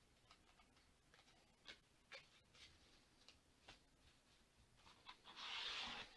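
Near silence: room tone with a few faint, scattered clicks and a short hissing noise near the end.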